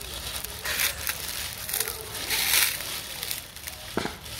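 Dry fallen leaves crunching and crackling under a crawling toddler, in uneven bursts, the loudest about a second in and again around two and a half seconds.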